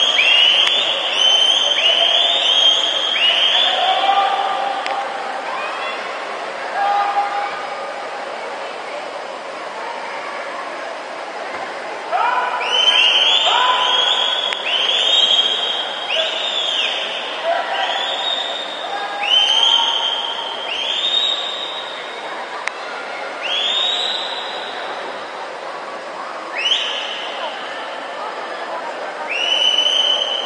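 Spectators at an indoor swimming race shouting encouragement in repeated high-pitched cheers, about one a second, in bursts with lulls between them, over the steady din of the pool hall.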